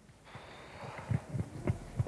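A person's faint breaths and a few short, soft mouth or breath sounds in the second half, after near silence at first.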